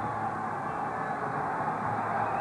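Steady, even roar of a velodrome's ambience during a track race.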